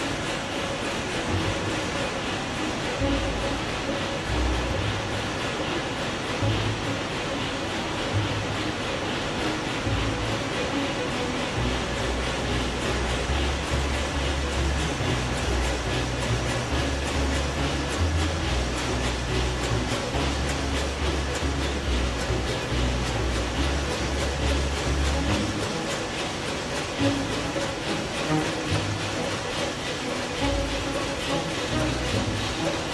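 Large marine diesel engine running in a ship's engine room: a steady, loud mechanical clatter and hiss, with background music and a low bass line laid over it.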